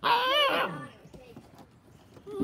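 An eight-week-old standard poodle puppy gives one short, high-pitched bark that lasts under a second.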